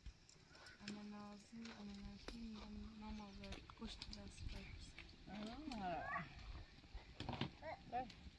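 Faint voices in short stretches, with an animal call about halfway through and scattered light clicks and taps.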